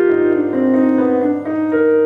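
Keyboard (stage piano) playing a slow ballad passage between sung lines, with sustained chords and a melody that changes note every half second or so.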